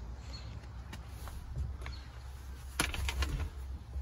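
Someone climbing up into a low cab forward truck's cab through the open driver's door: scattered clicks, then a cluster of knocks and clicks about three seconds in, over a low rumble.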